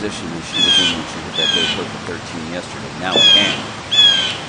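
A bird calling over and over, short slightly falling calls about once a second.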